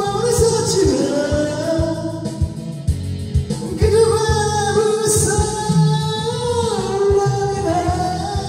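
A man singing into a karaoke microphone over a karaoke machine's backing track with drums, holding long notes.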